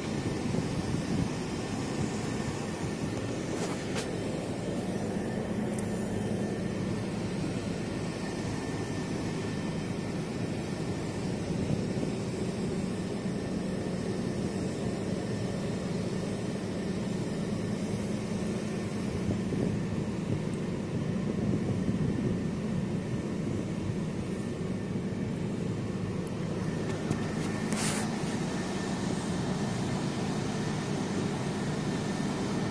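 Skid-steer loader's diesel engine running steadily, a constant low drone and hum heard close to the open engine bay.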